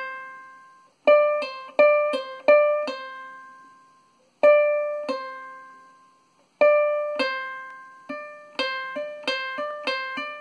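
Ukulele notes plucked at the fifth fret and pulled off to the third fret, each a falling step sounding the second note without a fresh pluck. The pull-offs come one at a time with pauses between them. From about eight and a half seconds a quicker run alternates pull-offs and hammer-ons between the same two notes, at about three changes a second.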